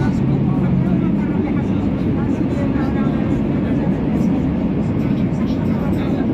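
Metro train running, heard from inside the carriage: a loud, steady low rumble of the train in motion, with faint voices in the background.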